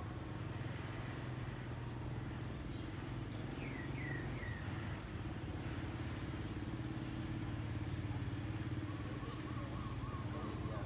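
Steady low engine hum, with three short high falling chirps about four seconds in.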